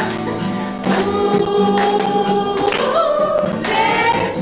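An upbeat Christian children's song: a group singing long held notes over a steady beat.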